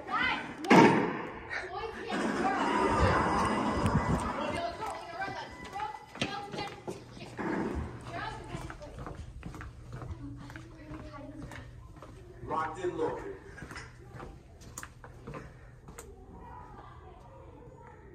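Players' voices without clear words and a loud thud about a second in, followed by scattered knocks and clicks that grow fainter toward the end.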